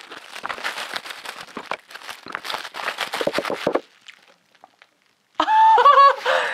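Thin white plastic packing wrap crinkling and rustling in quick, irregular crackles as it is pulled off a small, heavy object, for about four seconds. After a brief quiet pause, a woman's drawn-out exclamation of surprise comes near the end.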